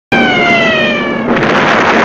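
Falling whistle of an incoming projectile: a single downward-gliding tone lasting about a second, cut off by a loud rushing noise of the blast.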